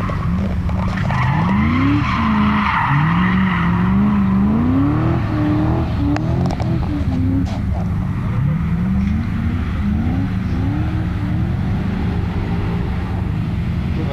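V8-engined BMW E36 M3 drifting: the engine revs rise and fall again and again as the car slides, with tyre squeal loudest in the first few seconds.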